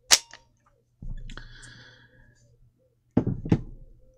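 A sharp knock, then about a second later a ringing metallic clang that fades away over a second and a half or so.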